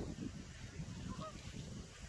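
A few faint, short calls of distant waterfowl, such as geese or ducks.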